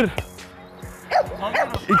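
A dog giving several short, excited barks and yips from about a second in, worked up by a ball being dribbled in front of it, over faint background music.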